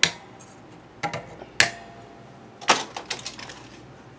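Sharp metallic clicks of pliers working the string ends at an electric guitar's tuner posts: a click at the start, a louder one about one and a half seconds in followed by a faint brief string tone, and a quick cluster of clicks near three seconds.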